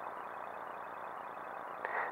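Faint steady hiss of room tone from the narrator's microphone, with a faint high-pitched tone pulsing rapidly.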